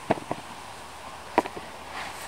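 Three short knocks of potatoes and gloved hands against hard plastic tubs and trays while potatoes are picked out of compost: two close together at the start and a louder one about a second and a half in, over steady breeze.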